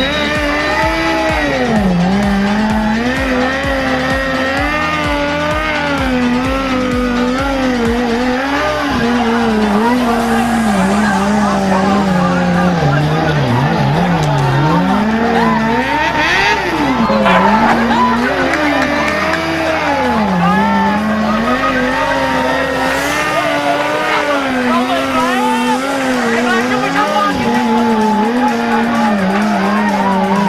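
Several motorcycle engines revving up and down together at low speed, the pitch of each rising and falling over and over as the riders work the throttle to keep their bikes crawling in a slow race.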